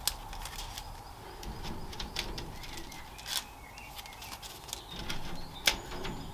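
Thin laser-cut stencil card parts being handled and stacked: light rustling of card with a handful of small clicks and taps at irregular intervals, the sharpest near the end.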